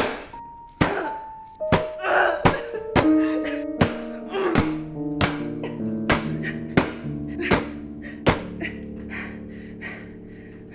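About a dozen heavy thuds of a metal electric kettle being brought down on a person again and again, roughly one every three-quarters of a second, stopping shortly before the end. Under them, music whose held notes pile up into a sustained chord.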